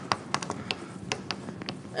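A string of light, irregular taps, about five a second, over faint room noise.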